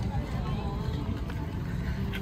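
Voices of people passing close by and chatting in a crowd of walkers, over a steady low rumble.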